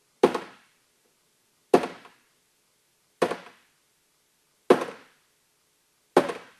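Hammer striking a Gator Pro Series polyethylene rack-case lid four times, about a second and a half apart, each blow dying away quickly. The polyethylene lid takes the blows without cracking.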